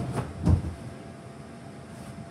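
A child landing on an inflatable bounce house: two dull thumps, the first right at the start and the louder one about half a second in. Under them runs the steady low hum of the bounce house's inflation blower.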